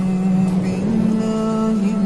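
Male Quran reciter's voice holding one long, drawn-out note in melodic recitation, the pitch stepping up about a second in and back down near the end.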